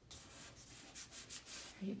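A hand rubbing a glued paper cut-out flat onto a paper collage: a soft papery rubbing in several short strokes.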